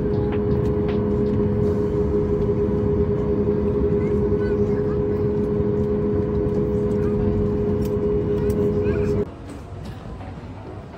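Steady drone inside a jet airliner's cabin while the plane taxis, with two steady hum tones over a low rumble. It cuts off sharply about nine seconds in, giving way to a quieter, hollow terminal background.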